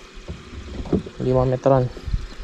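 A man's voice speaking briefly, over low, steady background noise.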